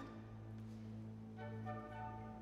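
Symphony orchestra playing softly: low notes held steady, with higher instruments coming in on held notes about one and a half seconds in.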